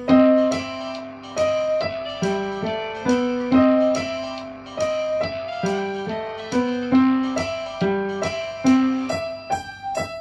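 Upright acoustic piano played solo in a Dixieland style. Notes and chords are struck in an even rhythm, each one ringing and fading.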